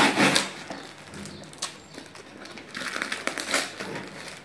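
Plastic packaging crinkling and a cardboard shipping box rustling as an item is pulled out of the box by hand, loudest in a burst at the start and again from about three seconds in.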